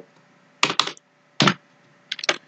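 Computer keyboard keys being struck, three short clacks: two in quick succession, then one more.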